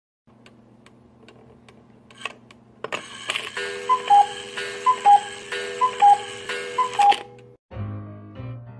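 A clock ticking faintly, then about three seconds in an alarm goes off: a high-then-low two-note beep repeating about once a second over a steady buzz. It cuts off suddenly near the end, and music begins.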